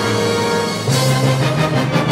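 Wind ensemble playing loud, full sustained chords. About a second in, a new attack enters over a strong low note, with a string of accented strokes.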